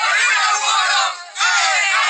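A crowd of many voices shouting together at once, breaking off briefly just past halfway before starting up again.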